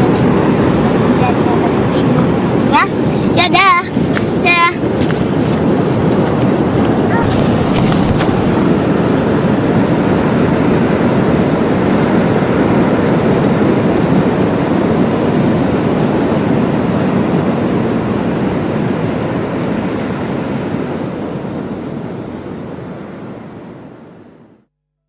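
Ocean surf breaking on a sandy beach, a steady loud rush with wind buffeting the microphone. A brief voice calls out a few seconds in, and the sound fades out near the end.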